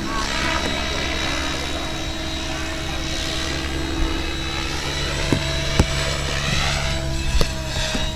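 Radio-controlled 3D aerobatic helicopter in flight: a continuous rotor and motor drone whose higher whine rises and falls slightly as it moves through the manoeuvre.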